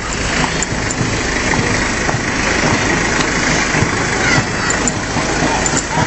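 Engine of a small fire-brigade pump truck running steadily as the truck rolls slowly past at close range.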